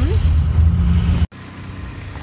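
Low, steady rumble of a pickup truck heard from inside the cab as it creeps along in a line of cars. It cuts off suddenly a little over a second in, leaving a much quieter open-air background.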